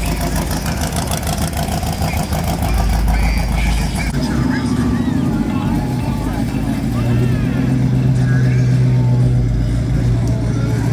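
An old GMC pickup truck's engine rumbles with a fast pulse as the truck drives slowly past. From about four seconds in, a classic Ford Mustang fastback's engine takes over with a steady drone as the car rolls by and pulls away.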